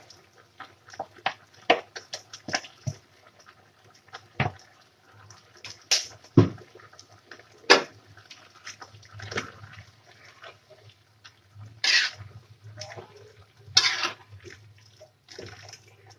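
Spatula working a wok of saucy stir-fried vegetables: scattered clicks and taps against the pan, with a few longer scraping strokes near the end.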